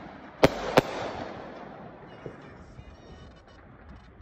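Aerial fireworks bursting overhead: two sharp bangs about half a second in, a third of a second apart, then a fading hiss of noise as the burst dies away.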